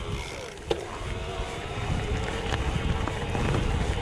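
Mountain bike rolling downhill on a dirt and stony forest trail: steady tyre rumble and bike rattle with scattered clicks, one sharp knock about a second in, and wind buffeting the microphone.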